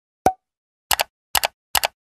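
Edited-in sound effects for an animated end screen. A single short pop comes about a quarter second in, then three quick double clicks follow at roughly half-second spacing as graphic buttons and banners pop into view.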